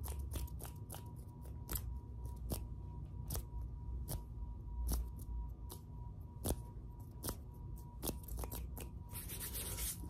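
ASMR hand sounds: hands rubbing and moving quickly close to the microphone, with irregular sharp clicks a few times a second. The rubbing thickens near the end.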